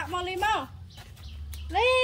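A woman talking, then near the end a pet macaque's single high call, rising in pitch and then held briefly.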